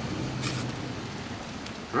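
Steady hiss-like background noise with a low hum that fades out within the first half-second, and a brief faint hiss about half a second in.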